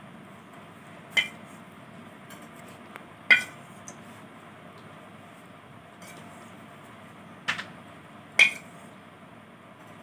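A steel spoon clinks four times against a metal vessel, each a sharp clink with a brief ring, while hot ghee is spooned onto flour. A faint steady hiss lies underneath.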